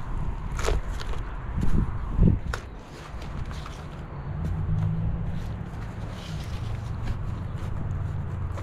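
Hands scooping and dropping loose potting soil into a plastic pot and pressing it down around a root ball: soft rustling and scraping with a few light knocks in the first couple of seconds, over a low steady rumble.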